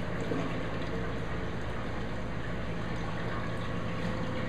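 Steady rush and trickle of circulating water with a low, even pump hum from a running reef aquarium system.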